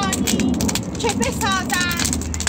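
Wood bonfire crackling and popping with many sharp little snaps, while people's voices carry over it.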